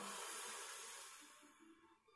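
A soft breathy exhale, a hiss that fades out over about a second, followed by near silence with faint background music.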